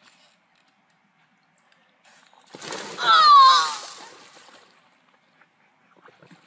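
A person's voice: a short cry falling in pitch, over a burst of noise, about halfway through, fading within two seconds.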